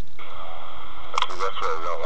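A voice with a radio-like sound over a steady hiss and hum, speaking briefly from about a second in.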